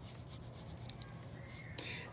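A crayon is rubbed back and forth on paper, pressed on hard. It makes faint, irregular scratchy strokes over a low steady hum.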